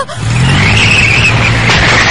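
Cartoon sound effect of a fan gadget blowing a powerful gale: a loud, steady rushing noise with a low hum underneath, swelling up just after the start.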